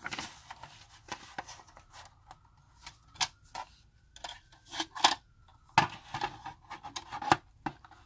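Plastic spiral art toy and paper being handled: the toothed plastic frame is closed down over a sheet of paper and pressed into place, giving irregular light clicks and knocks with some paper rustling, the loudest knocks about five to seven seconds in.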